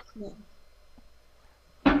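Mostly low background hum, with a brief faint voice near the start; just before the end a person's voice starts suddenly and loudly.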